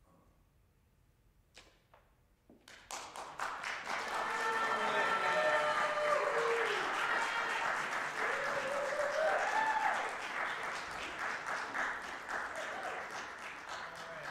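After a short near-silent pause, an audience breaks into applause about three seconds in, with cheering and whoops in the middle. The applause keeps on and begins to thin out near the end.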